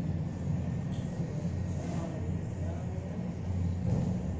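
Steady low rumble of background noise with a faint murmuring voice over it.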